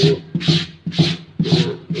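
Stiff brush scrubbing a wet, soapy printed cotton T-shirt in steady back-and-forth strokes, about two rasping strokes a second. This is a brush test of a Kornit DTG print's wash fastness.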